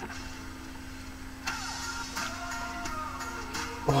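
Background music, with a car's power window motor running from about a second and a half in.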